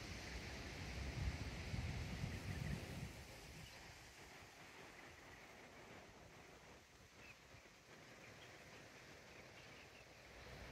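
Faint outdoor ambience. Wind rumbles on the microphone for about the first three seconds, then a quiet steady hiss remains, with a few faint bird chirps.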